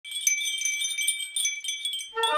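Japanese glass wind chime (fūrin) tinkling in the wind, its clapper striking the glass bell in quick, irregular strokes with high, clear ringing notes.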